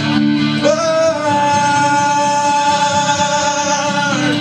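Male voice singing one long held note over a strummed acoustic guitar, performed live.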